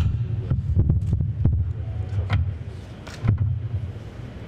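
Low rumble with irregular knocks and clicks, the sound of handling and bumping close to a microphone.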